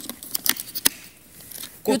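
A few sharp plastic clicks and taps, about four in the first second, as the parts of a Tefal cordless vacuum's wet-mop head are handled and fitted together.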